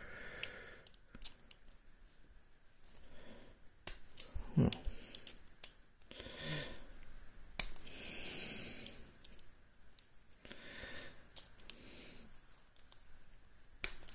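Faint, scattered small metallic clicks and scrapes from a precision screwdriver being fitted to the tiny screws of a euro-profile cylinder lock, with a few soft breaths between them.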